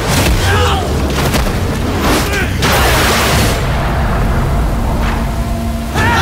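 Film fight sound effects: a quick run of punch and body-hit impacts with men's shouts and grunts over the first couple of seconds, then a burst of rushing noise and a deep, low rumble that holds to the end.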